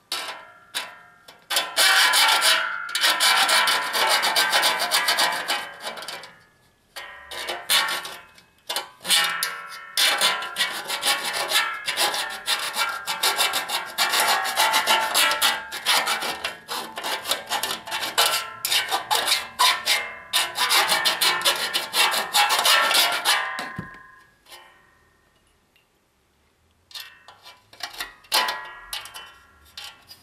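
Hand deburring tool's hooked blade scraping along the cut edge of an aluminum panel, shaving off burrs and laser-cutting slag in rapid repeated strokes. The scraping comes in long spells, stops for a few seconds near the end, then resumes with sparser strokes.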